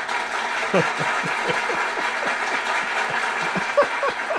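People laughing: a long run of short laughs, several a second, over a steady hiss.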